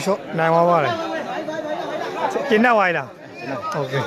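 Loud talking voices with crowd chatter behind them.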